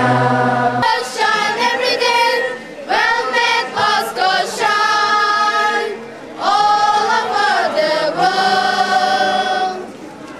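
A choir singing an offertory hymn in long held phrases, with a short break about six seconds in.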